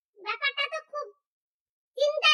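A woman's voice pitched high like a child's, one short utterance of about a second without clear words, then a pause.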